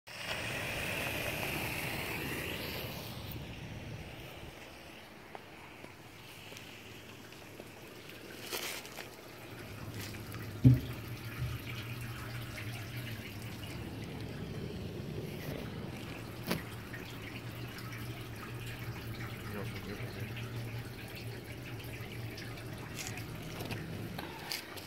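Water trickling and dripping into a sinkhole cavity, fed by a garden hose, with one sharp knock about ten seconds in and a low steady hum beneath the second half.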